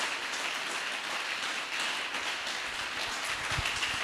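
Congregation applauding: a steady, dense patter of many hands clapping.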